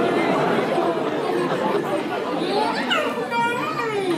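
Several voices talking over one another: overlapping, indistinct chatter with no single clear speaker.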